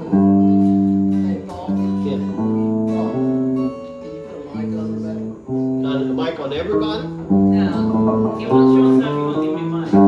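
Electric and acoustic guitars playing together in an informal jam. They play held chords and notes that change every second or so.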